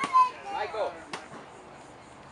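Young children's voices calling out, with two sharp knocks, one at the start and one about a second in, from a plastic toy bat hitting a piñata.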